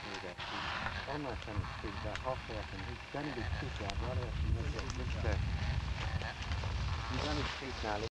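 Indistinct men's voices talking on and off, over a steady low rumble.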